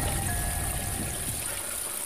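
A steady rushing noise with a low rumble under it, fading slightly toward the end.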